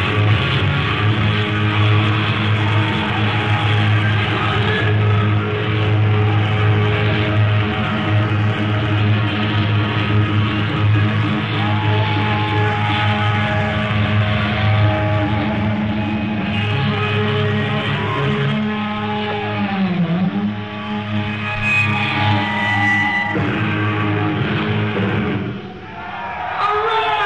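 Live hard rock band on a lo-fi audience recording: distorted electric guitar over bass and drums, with long held notes. In the last few seconds the guitar bends its pitch down and up, and the band drops in loudness just before the end.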